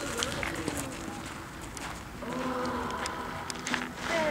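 Footsteps crunching on a gravel pétanque court, heard as irregular short scrapes and clicks, with indistinct voices in the background.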